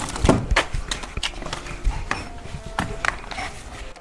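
Footsteps and shoe scuffs on concrete steps, an irregular run of knocks about two or three a second.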